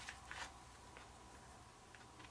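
Near silence, with a few faint soft rustles in the first second as cotton macrame cords are pulled tight by hand.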